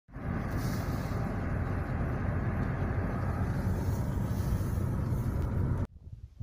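Wind buffeting the microphone in an open field: a steady low rumble with hiss above it, cutting off abruptly near the end.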